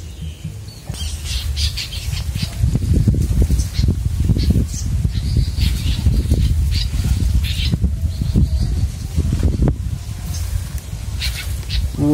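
Wild birds calling in short, high chirps through the canopy, over loud, uneven low rumbling and knocks from a handheld phone camera being moved about. The rumbling is heaviest from about two and a half seconds in until about ten seconds in.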